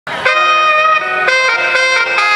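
Traditional Khmer music led by a reedy wind instrument playing long held notes, the pitch changing about once a second.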